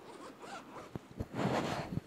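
Zipper on a Bible's zippered cover being pulled, one raspy run near the end, after a few light handling clicks.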